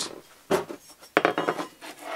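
Small tools and parts being handled on a wooden workbench: a short knock about half a second in, then a longer rattle and clatter.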